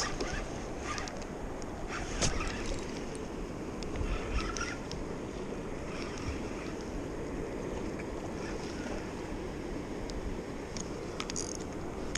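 River water running steadily, with wind on the microphone and a few small knocks and clicks of handled fishing gear.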